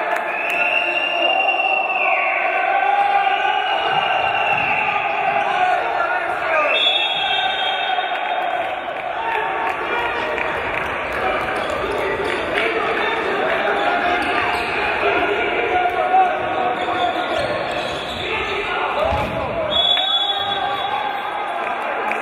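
A handball bouncing on a wooden sports-hall floor during play, mixed with voices across the hall.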